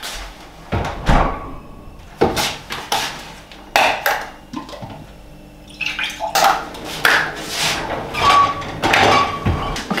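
Kitchen handling sounds: a series of separate knocks and clatters as things are picked up and set down on the counter, busier in the last few seconds.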